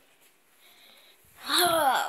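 A person lets out a loud voiced sigh about a second and a half in, its pitch falling. Before it there is only quiet room tone.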